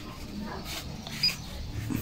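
A short electronic beep about a second in, as a button is pressed on a handheld motorcycle fuel-injection diagnostic scanner, over faint background noise.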